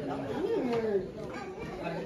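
Several people chattering.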